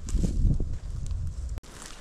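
Footsteps on a sandy, leaf-littered trail, with low rumble on the handheld camera's microphone. The sound cuts off abruptly about one and a half seconds in, leaving quieter outdoor background.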